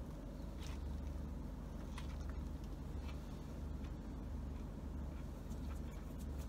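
Steady low hum inside a parked car, with a few faint soft clicks and rustles as a burger is bitten into and chewed.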